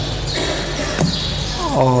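A pause in a man's speech filled with steady low hum and hiss. A single short knock comes about a second in, and the man's voice starts again near the end.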